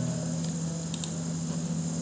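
Steady low electrical hum and hiss of background room noise, with a couple of faint short clicks about a second in, typical of a computer mouse click.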